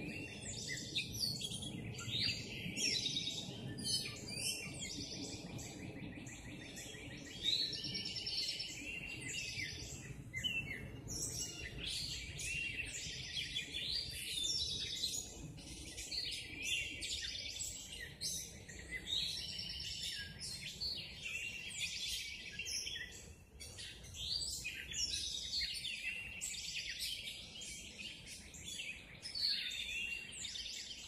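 Several songbirds singing at once in a dense morning chorus, with many chirps and trills overlapping without a break. A faint steady low rumble lies underneath.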